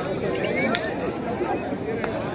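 Many voices talking and calling out at once, the chatter of a spectator crowd and players around a kabaddi court, with a sharp knock or clap or two.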